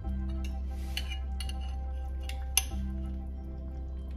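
Background music with sustained notes, over a few light clinks of a spoon against a glass bowl as pieces of fish are taken out of it. The sharpest clink comes about two and a half seconds in.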